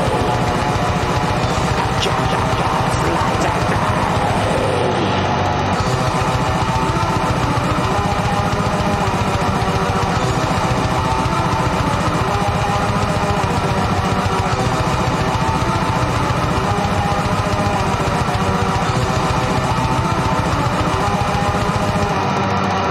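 Extreme metal song with guitars, playing loud and unbroken.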